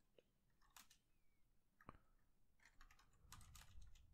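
Near silence with a few faint computer keyboard keystrokes: single clicks about one and two seconds in, then a short run of keystrokes near the end.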